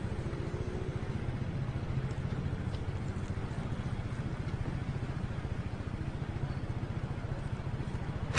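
Motor scooter engine idling steadily with a fast, even pulse.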